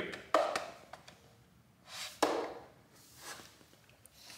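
Two light knocks about two seconds apart, each trailing off briefly.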